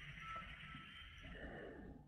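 Faint breathing close to a headset microphone: a soft hiss of breath for about a second and a half, then a lower, softer breath.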